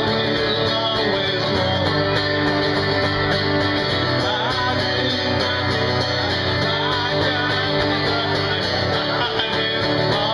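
Live acoustic guitar strumming with singing.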